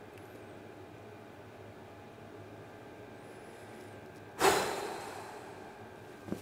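A man's heavy sigh of frustration: one long breathy exhale about four and a half seconds in that fades over about a second, after quiet room tone.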